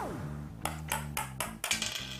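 Edited background music with a steady bass line, opening on a falling whistle-like sound effect, then a quick run of short, sharp clicks about four a second.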